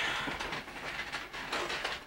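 A deck of playing cards being handled in the hands, giving a run of light, irregular clicks and rustles.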